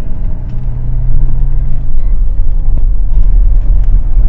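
A car driving, heard from inside its cabin: a loud, steady low engine and road rumble.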